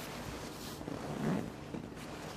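A pause in speech filled with soft rustling noise, like wind or clothing brushing a microphone, over a faint low hum. Just past halfway a brief faint voice rises and fades.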